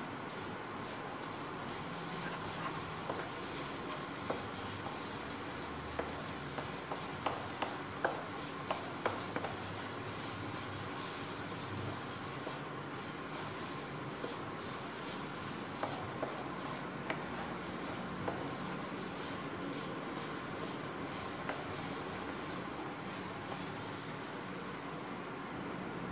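Ground urad dal paste sizzling steadily as it fries in oil in a nonstick pan, stirred and scraped with a spatula. A run of light spatula ticks comes about six to ten seconds in, with a few more later.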